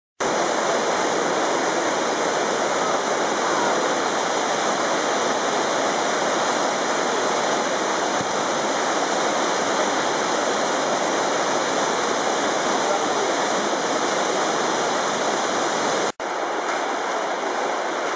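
Loud, steady rush of whitewater rapids, the stream pouring and foaming over rocks. The sound drops out for an instant about sixteen seconds in, then goes on slightly quieter.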